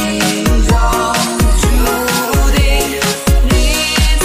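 Electronic dance remix of a Mandarin pop song: a steady, heavy kick-drum beat under synth and melodic parts, with a rising high sweep in the first half.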